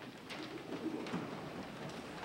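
Sheets of paper rustling as they are handled and gathered, with scattered soft clicks and knocks.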